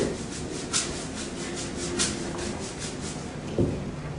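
Soft scattered rustles and clicks over a faint steady hum, with one low thump about three and a half seconds in.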